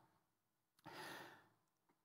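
Near silence broken once, about a second in, by a man's short audible breath lasting under a second.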